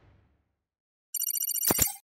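A short electronic title sound effect: a rapid trill of stacked high tones, about a dozen pulses a second, with two sharp clicks near the end, stopping abruptly. It comes in just after a second of near silence.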